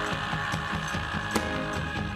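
Live rock band playing electric guitar, bass guitar and drum kit, with a held chord and a single sharp drum hit about a second and a half in.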